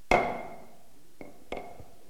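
Auctioneer's gavel struck on the rostrum: one sharp knock with a short ringing tail, then a lighter second knock about a second and a half later. The hammer falling marks the lot as sold.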